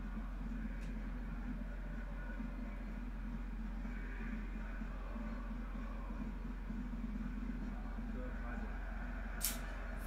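A steady low hum under faint, indistinct background sound, with one short click near the end.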